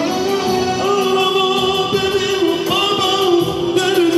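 A man singing an Azerbaijani wedding song through a microphone and PA, holding long, slightly wavering notes over electronic keyboard accompaniment.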